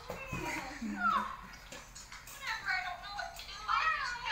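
A young girl's voice: high-pitched wordless vocalising and calls, one sliding down in pitch about a second in, with more voice near the end.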